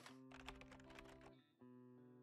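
Faint intro jingle: soft held notes with light, quick clicking ticks over them, dropping out for a moment about one and a half seconds in.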